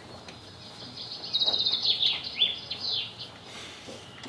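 Birds chirping, with a rapid high trill and short falling chirps from about one second in to about three seconds in. This is birdsong setting an outdoor picnic scene.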